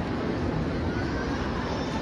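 Busy indoor shopping-mall ambience: a steady low rumble with indistinct crowd chatter.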